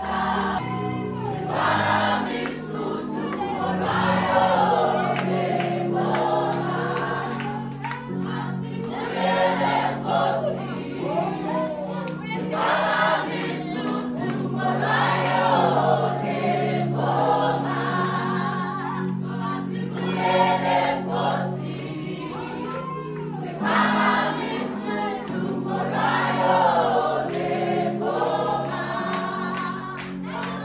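A group of worshippers singing a gospel worship song together in phrases a few seconds long, over sustained chords from an electric keyboard.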